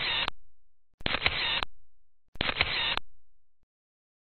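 Photo booth playing its recorded camera-shutter sound effect, a click-and-hiss snap that repeats identically about every 1.4 s, heard three times (plus the end of one just before).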